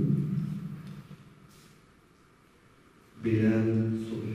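A voice reading a name aloud into a microphone trails off in the first second. After a pause of about two seconds, a man's voice begins reading the next name.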